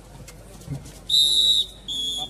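Referee's whistle blown twice in a kabaddi match: a long, loud blast about a second in, then a shorter blast near the end, ending the raid and awarding a point.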